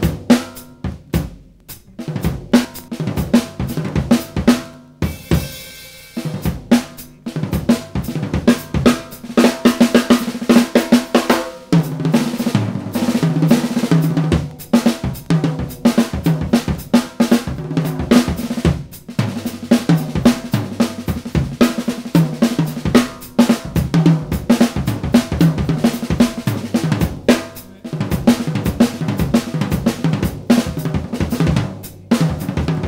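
Unaccompanied drum-kit solo played with sticks: snare, bass drum, toms, hi-hat and Zildjian cymbals, with a short lull and cymbal wash about five seconds in and a fast roll around ten seconds in.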